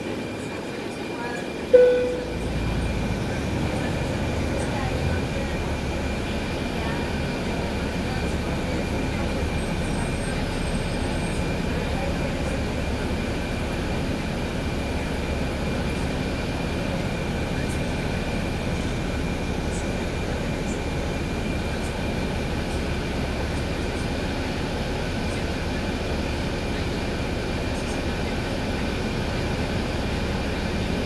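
Inside a NABI 416.15 transit bus moving in traffic: the diesel engine and drivetrain run as a steady low rumble, with a thin high whine that holds throughout. A single sharp knock comes about two seconds in, and the rumble grows louder after it.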